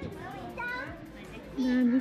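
Children's voices and chatter at play, with a louder voice calling out in a long held tone near the end.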